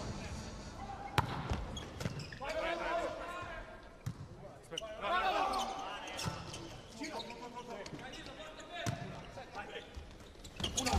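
Volleyball struck repeatedly in a rally: a sharp serve contact about a second in, then several more hand-on-ball hits from passes, sets and attacks. Voices carry through the large hall between the hits.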